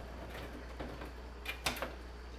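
A few faint, short clicks and taps of a hand handling the aquarium's top, clustered about a second and a half in, over a steady low hum.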